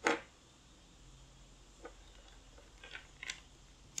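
Quiet room tone with a short burst of noise at the start, then a few faint clicks and taps scattered through the rest.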